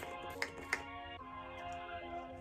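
Background hip-hop beat music, with three short hissing bursts from a setting-spray pump bottle being sprayed toward the face: one at the start, one about half a second in and one near three-quarters of a second.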